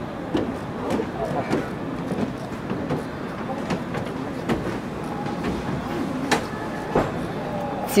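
Faint background chatter of other people's voices over steady outdoor noise, with a couple of light clicks near the end.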